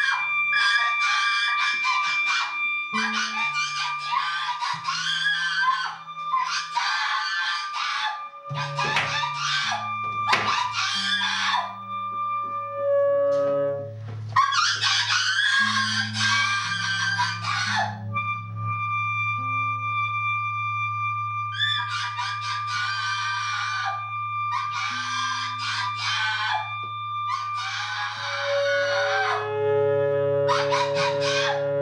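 Noise-improv music: a woman's harsh, shrieking scream in repeated bursts of one to three seconds, with a pause of a few seconds past the middle. Under it are sustained instrumental tones from electric guitar and saxophone: low notes that shift in steps and a steady held high tone.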